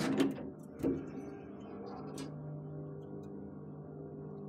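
Elevator car doors sliding shut and closing with a thunk about a second in. Then the hydraulic elevator's machinery runs with a steady low hum of several tones, the lowest growing stronger about two seconds in.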